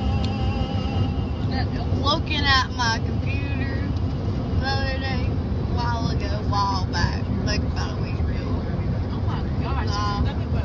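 Steady road and engine rumble inside a moving car's cabin. Short high-pitched voice sounds rise over it a few times.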